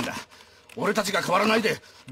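Speech only: a voice talking in short phrases, after a brief pause about a quarter of a second in.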